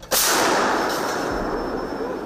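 A 2S5 Giatsint-S 152 mm self-propelled gun fires a single round: a sudden loud blast just after the start, then a long rumbling decay that fades slowly.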